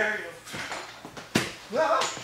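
Voices of performers in a small theatre, broken by one sharp impact about one and a half seconds in, followed by a rising voice near the end.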